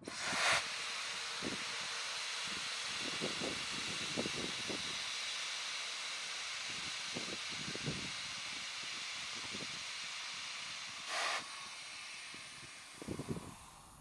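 Compressed air hissing steadily out of a Case IH Patriot 50 series sprayer's air suspension through its quarter-turn dump valve as the suspension is let down. There is a louder burst at the start and another about eleven seconds in, and the hiss eases off near the end as the suspension comes fully down.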